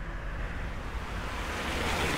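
A steady rushing noise over a low rumble, swelling near the end.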